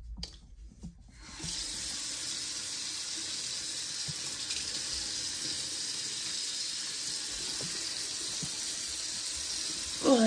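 Bathroom sink tap turned on about a second in, then water running steadily into the basin.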